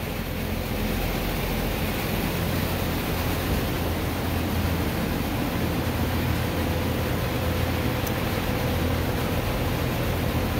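A steady low rumble and hiss with a faint even hum, unchanging throughout: mechanical air noise such as a running fan.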